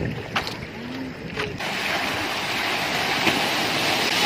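Sea water in the shallows: a couple of small splashes at first, then, from about halfway through, the steady, growing rush of a breaking wave's whitewater washing in.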